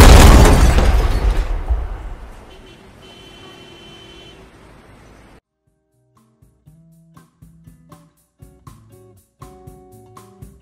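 A loud crash sound effect that hits suddenly and dies away over about two seconds. About halfway through, light music with short picked notes starts.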